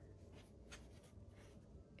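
Near silence with a few faint rustles and light taps as a suede boot is gripped and lifted by hand.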